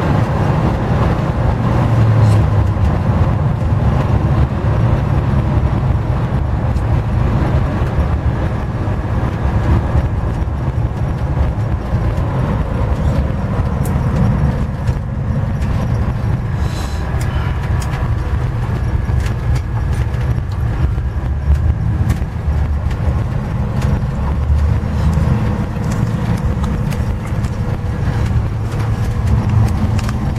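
A Gen III Hemi V8 in a 1928 Dodge rat rod cruising steadily at highway speed, heard from inside the cab as a continuous low drone mixed with road and wind noise.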